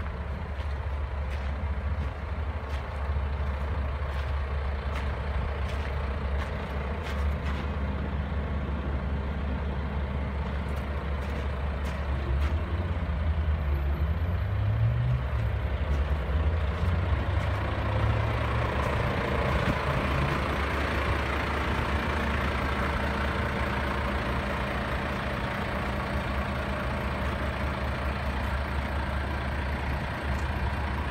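A heavy vehicle's engine running steadily, its pitch rising and falling briefly around the middle, with a hiss swelling soon after.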